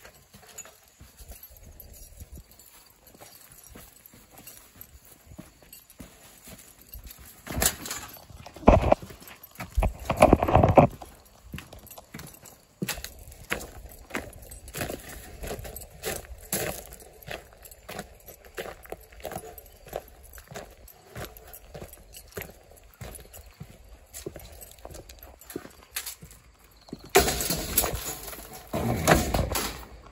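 Footsteps on dry leaves with the rattle and clank of a wire-mesh live trap being carried with a raccoon inside. Louder clanks come about 8 to 11 seconds in, and a longer clatter near the end.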